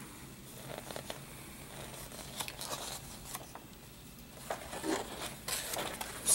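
Paper instruction sheet rustling and crinkling as it is handled and unfolded: a scatter of irregular crackles that grow busier in the second half.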